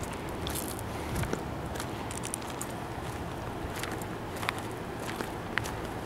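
Footsteps on loose gravel, an irregular series of short crunches over a steady outdoor background hiss.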